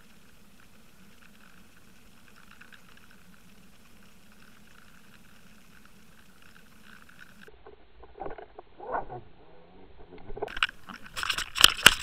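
Muffled steady hum picked up by a camera in its waterproof housing, towed underwater behind a trolling boat. From about eight seconds in, irregular swells and knocks build up into a run of loud sharp knocks near the end.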